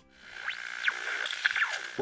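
Television static sound effect: a steady hiss crossed by short whistling glides rising and falling, like a set being tuned, over electronic music.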